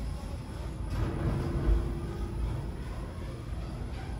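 OTIS GeN2 gearless lift car travelling down the shaft: a steady low rumble of ride noise, with a faint steady hum from about a second in to about three seconds in.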